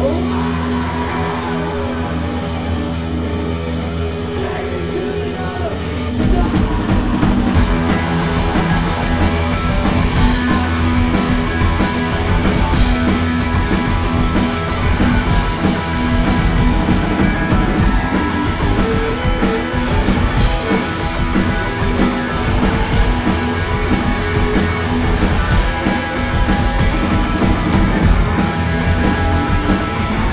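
Live rock band playing loud: sustained, droning electric guitar at first, then the drums and the full band crash in about six seconds in and play on hard.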